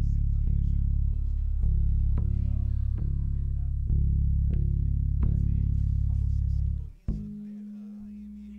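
Electric guitar and bass through amplifiers playing heavy, sustained low notes, re-struck about every half-second to second. The notes stop abruptly about seven seconds in, leaving a steady low hum.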